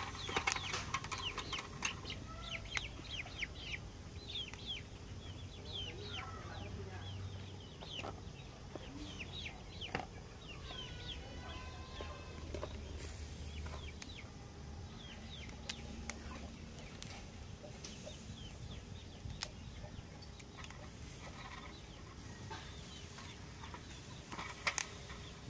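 Birds chirping: many short, high, falling chirps, thick over the first half and sparser later.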